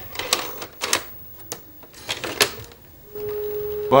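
Sharp mechanical clicks and knocks, several spaced irregularly, of a plastic camera mechanism being handled. About three seconds in, a steady single-pitched tone begins.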